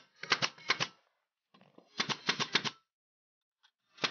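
Pneumatic nail gun firing nails into wood in two quick bursts of several sharp shots each, one at the start and another about two seconds in. The nails are fixing a thin wooden batten that holds roof tiles from sliding.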